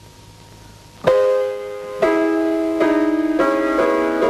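Piano playing the introduction to a song. After about a second of quiet, a chord is struck, then a run of sustained chords follows.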